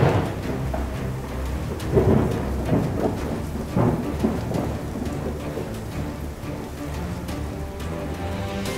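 Thunderstorm sound effect: rain hiss with claps of thunder right at the start, about two seconds in and again near four seconds, over a low droning music bed.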